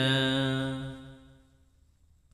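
A Buddhist monk's voice chanting Pali paritta, holding the last syllable of a line on one steady low pitch and fading out about a second and a half in.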